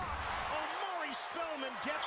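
Basketball TV broadcast audio: a commentator speaking faintly over a steady wash of arena crowd noise.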